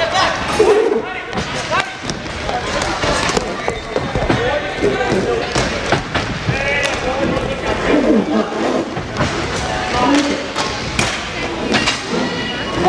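Inline hockey play in an indoor rink: repeated sharp knocks and clacks of sticks, puck and skates, with voices shouting over them in the hall.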